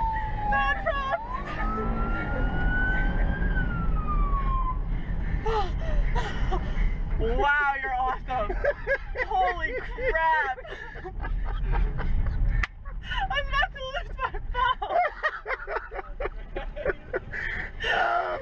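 Police car siren wailing, one slow fall and rise in pitch in the first few seconds, over engine and road rumble inside the moving patrol car. Shrieks and laughter from the occupants follow. The low rumble drops off suddenly about two-thirds of the way through.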